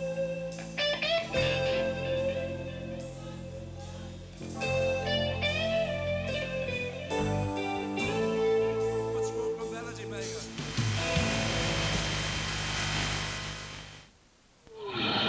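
A live rock band playing the slow opening of a ballad: electric guitar lead with sustained, bent notes over bass, drums and keyboards. Near the end a wash of cymbals fills the top, and the sound cuts off suddenly.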